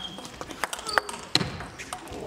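Table tennis rally: the plastic ball clicking back and forth off the bats and the table, a run of sharp clicks a few per second in a large hall.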